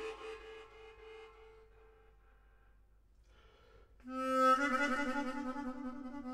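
Classical music: a loud orchestral passage breaks off, leaving one soft held string note that fades away into near silence. About four seconds in, a harmonica enters loudly with sustained notes that step from pitch to pitch.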